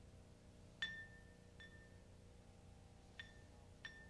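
An ink brush tapping against the rim of a small ceramic ink bowl four times. Each tap is a light click followed by a brief high ring at the same pitch; the first tap is the loudest.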